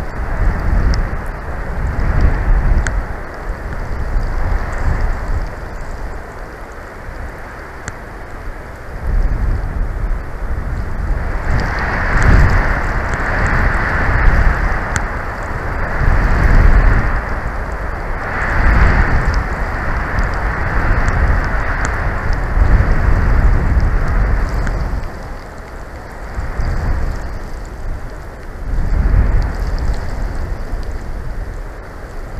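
Gusty wind buffeting the outdoor nest-cam microphone in a snowstorm: a deep rumble that swells and dies away in gusts every few seconds, loudest around the middle.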